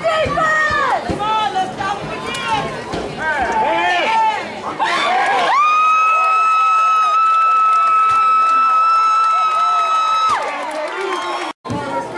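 Football spectators shouting and cheering during a play, then one long high steady note held for about five seconds over them before it stops.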